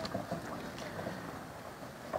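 Faint, steady background noise with a few soft ticks in a pause between a man's spoken phrases at a microphone.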